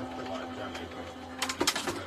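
Electric die-cutting machine running with a steady hum as it feeds the cutting plates through, stopping about one and a half seconds in, followed by a few clicks and handling noise.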